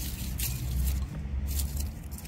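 Rustling and scraping noise over a low rumble, with a few short scratches about half a second in and again past the middle.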